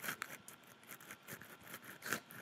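Faint, irregular small clicks and ticks over quiet room tone.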